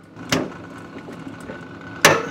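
A single knock about a third of a second in, then the steady hum of a refrigerator's freezer fan running with the freezer door open.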